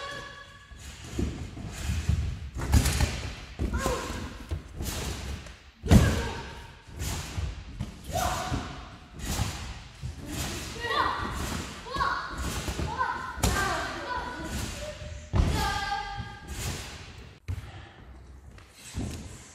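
A string of thuds from people jumping and landing on gym mats and the wooden floor of a large sports hall, together with running footsteps and take-offs. One sharp landing about six seconds in is the loudest; voices are heard in the background.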